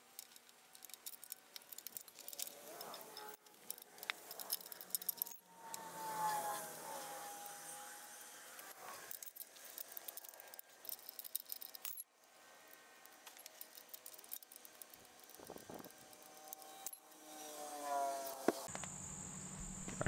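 Fast-forwarded wrench work on steel engine mounting bolts: a quiet, rapid run of small metal clicks and clinks. A few brief, high gliding tones come through about six seconds in and again near the end.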